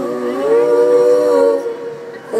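A cappella female singing: a wordless held vocal sound in several sustained notes at once, sliding up about half a second in and fading out near the end.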